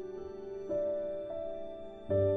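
Soft, slow background music of sustained held chords, moving to a new chord about two-thirds of a second in and again just past one second.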